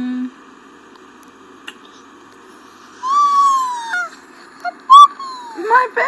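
A young child's high-pitched wordless vocalizing: one long falling squeal about three seconds in, then a few short, sharp squeals near the end.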